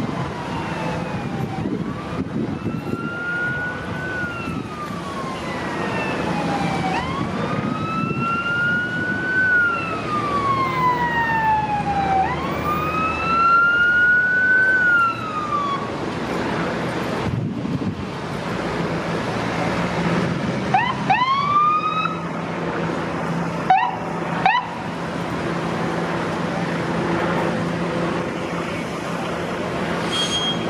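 Ambulance electronic siren on wail, the pitch slowly rising and falling about every five seconds, then stopping. A few seconds later come a few short, quick rising whoops as the ambulance arrives, over steady road traffic.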